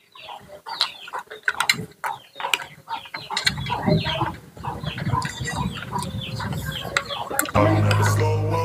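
Domestic chickens clucking, many short calls one after another. Background music starts near the end.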